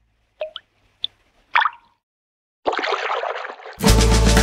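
Three short, bubbly plop sound effects, like water drips, followed about two and a half seconds in by a burst of rushing, splash-like noise. Near the end, the children's song's band music comes in with drums.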